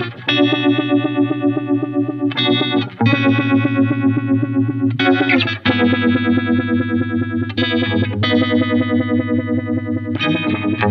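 Electric guitar (Fender Stratocaster) playing sustained chords through a univibe-style all-analog vibrato pedal, every note wavering with an even, steady pulse. The chords change every couple of seconds.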